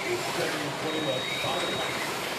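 Electric slot cars running laps on a multi-lane routed track, a steady whirring hiss from their small motors, with a voice talking over it.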